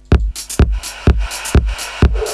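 Electronic dance track with a kick drum about twice a second. The same track, launched on a second deck of Traktor DJ software, comes in at the start and fills out the sound. The two copies are slightly out of step, which gives the 'crunch' that means the second deck was not started exactly on the beat.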